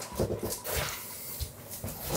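Rustling and a few soft knocks as a person turns and moves about close to the microphone.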